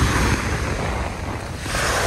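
Small waves breaking and washing up on a sandy beach, the surf swelling again near the end, with wind buffeting the microphone.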